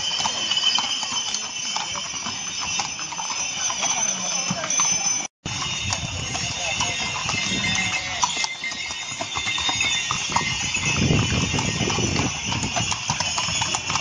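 Hooves of several ridden horses clip-clopping at a walk on a paved stone street.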